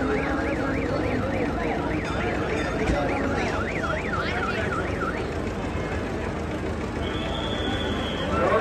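An electronic siren warbling fast, rising and falling about three to four times a second over crowd chatter, stopping about five seconds in. A short steady high tone sounds near the end.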